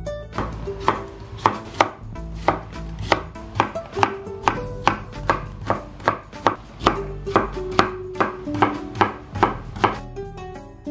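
Kitchen knife slicing a cucumber into thin strips on a wooden cutting board: an even run of chops about two to three a second, each stroke ending in a knock on the board.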